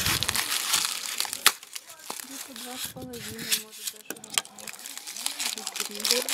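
Crinkly wrapping rustling and crackling in quick irregular bursts of sharp little clicks as it is handled at the mouth of a glass jar.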